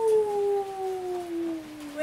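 A woman howling: one long, drawn-out 'oooo' that slides slowly down in pitch and fades.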